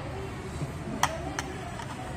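Steady restaurant dining-room background with faint voices, and two sharp clinks about a third of a second apart, a second in.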